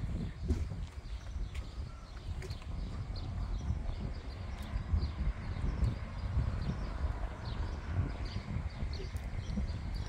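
Outdoor ambience: a low, uneven rumble, like wind on the microphone, with birds chirping faintly and intermittently in the trees.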